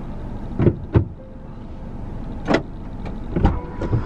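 Steady low hum of an idling car, heard from inside the cabin, with a few short clicks and knocks, the loudest about two and a half and three and a half seconds in.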